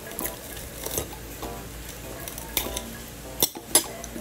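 Metal fork and spoon clinking and scraping against a plate while eating, in a handful of sharp clinks, the two loudest close together near the end.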